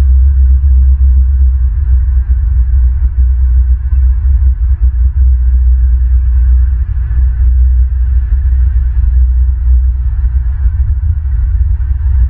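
A loud, steady low rumble and hum whose level flickers constantly.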